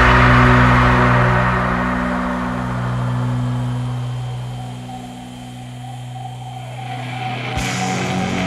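Heavy progressive rock: a loud passage gives way to a sustained low chord that rings on and slowly fades. New playing comes in sharply near the end.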